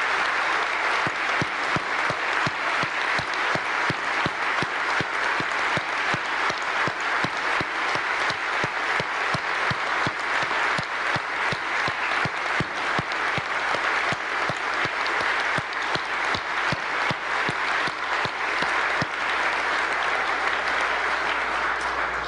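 A large audience applauding, many hands clapping in a dense, steady patter that begins to die down at the very end.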